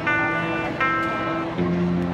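Electric guitar and electric bass playing live through amplifiers, with no vocals: picked guitar notes ringing out about every eight tenths of a second over held bass notes, the bass moving to a new note near the end.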